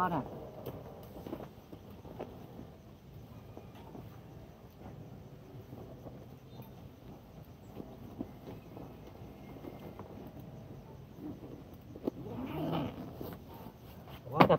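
Faint rustling and small scattered clicks from hands working through leafy riverbank plants and a bag. Near the end comes a brief pitched murmur.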